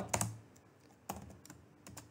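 A few quiet keystrokes on a computer keyboard as text is typed, clustered about a second in, with another tap or two near the end.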